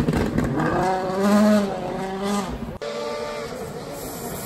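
A World Rally Car's turbocharged four-cylinder engine revs hard through gear changes as the car speeds away, its pitch rising and falling. The sound cuts off abruptly about three seconds in, and a second rally car's engine is then heard faintly, growing louder as it approaches.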